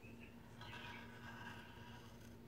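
Faint squeak of a wooden sliding lid rubbing in the grooves of a small cigar box as it is slid, lasting about a second and a half, over a low steady hum.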